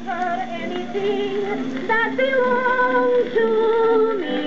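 A phonograph cylinder recording of a woman singing, played back electrically with an Edison Standard Model A mechanism and a Stanton 500 cartridge through the machine's own amplifier and speaker. In the second half she holds two long notes.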